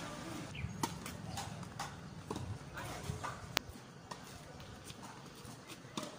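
Tennis play on an outdoor hard court: a scattered series of sharp knocks from racket strikes and ball bounces, with one sharper crack about three and a half seconds in.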